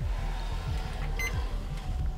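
Quiet background music with a low bass line, and one short high beep a little after a second in.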